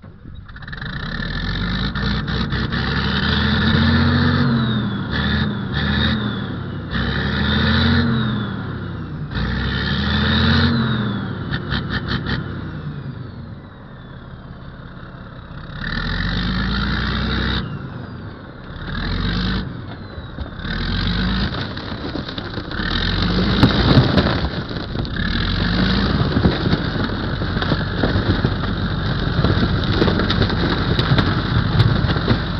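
Heavy diesel engine of a landfill compactor starting up and revving up and down repeatedly, every two to three seconds. Later it runs under load as the steel-wheeled machine drives onto an aluminium boat, with sharp knocks about three quarters of the way through.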